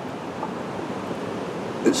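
A steady, even hiss of outdoor background noise with no distinct event in it, and a man's voice starting a word near the end.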